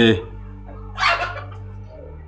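Background music holding a steady drone, broken by a short voice-like sound right at the start and another, harsher one about a second in.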